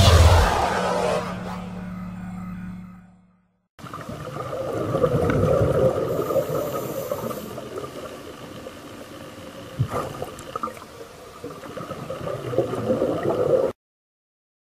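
A music jingle fades out, then after a short silence comes muffled underwater sound: a scuba diver's regulator breathing and exhaled bubbles, swelling and easing, with a click about ten seconds in. The sound cuts off suddenly near the end.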